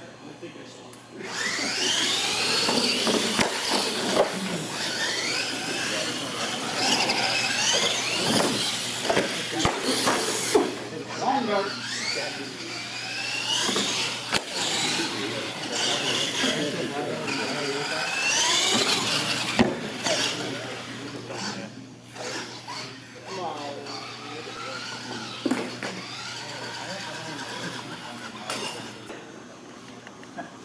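Electric RC monster trucks racing on a concrete floor, their motors whining and rising and falling in pitch with the throttle. It starts about a second in and eases off after about 22 seconds.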